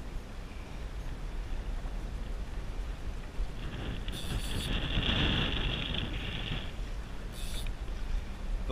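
Wind buffeting an action camera's microphone over choppy water lapping at a kayak, a steady low rumble and hiss. About halfway through, a louder rushing stretch lasts a few seconds.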